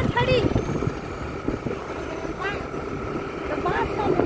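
Two-wheeler engine running and wind rushing past while riding, with a few brief voices.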